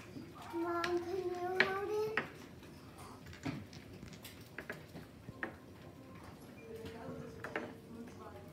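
Dominoes being stood upright one at a time on a wooden tabletop, giving light, scattered clicks. Near the start a voice hums a slowly rising note for about two seconds, and a fainter steady hummed note comes near the end.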